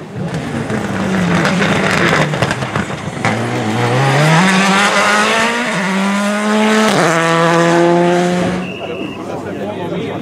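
Rally car at full throttle, its engine note climbing through the gears with quick upshifts. It is loudest as it passes close, then the pitch drops and the sound cuts off sharply.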